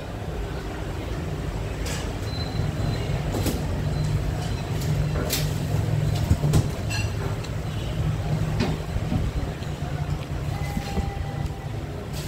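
Steady low rumble of street traffic, swelling a little midway, with a few sharp clicks of a spoon and chopsticks against a ceramic bowl.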